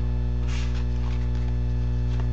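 Steady electrical mains hum with a stack of low overtones, with a brief faint rustle of trading cards being handled about half a second in.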